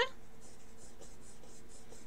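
Pencil scratching on sketchbook paper in rapid short strokes, about five a second, as a small dark spot is shaded in.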